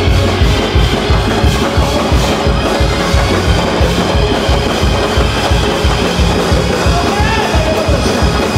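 Gospel praise-break music played by a church band, loud, with the drums keeping a fast, steady beat of about four to five hits a second.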